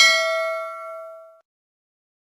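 A single bell-like ding sound effect, struck as the animated notification bell is clicked. It rings and fades, then cuts off about one and a half seconds in.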